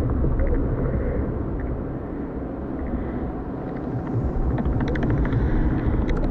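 A deep, steady rumble with scattered faint crackling ticks that grow more frequent near the end: designed sound under an animated logo intro.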